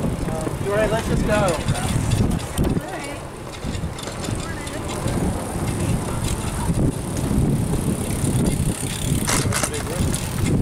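Low, fluctuating rumble of wind and rolling noise on the microphone of a moving bicycle, with people's voices briefly about a second in.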